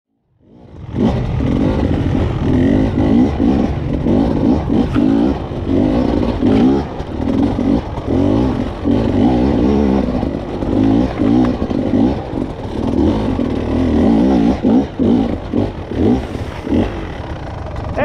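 Enduro motorcycle engine climbing a rocky trail, revving up and falling back over and over as the throttle is worked, with many short drops in power. It fades in over the first second.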